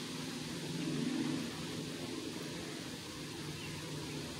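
Steady outdoor background noise with a faint low drone, swelling slightly about a second in.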